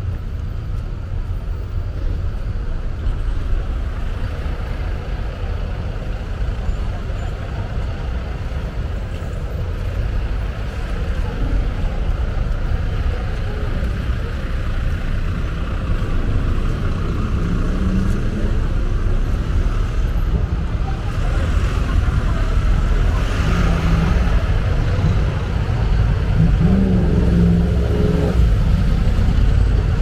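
Steady low rumble of a double-decker bus's engine running beside the pavement, amid street traffic, growing a little louder near the end. Passers-by's voices come through now and then.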